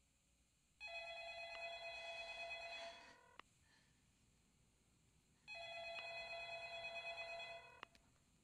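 A telephone ringing twice, each ring about two seconds long with a gap of about two and a half seconds between them.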